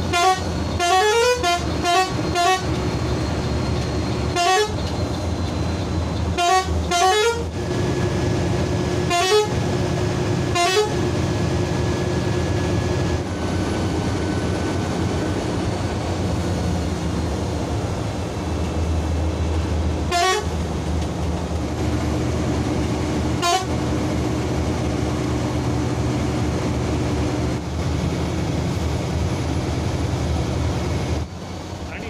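A bus horn sounding in short repeated honks: a quick run of blasts in the first few seconds, more at intervals through the first ten seconds, and two more around twenty seconds in. Under the honks the engine and tyres hum steadily, heard from inside the bus's cab.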